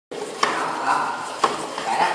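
Hand floor pump being worked to pressurize a plastic-bottle water rocket: two sharp clacks about a second apart, with a hissing haze between.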